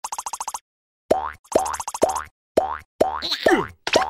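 Cartoon sound effects: a quick rattle of clicks, then a series of springy boing-like tones about twice a second, several gliding down in pitch.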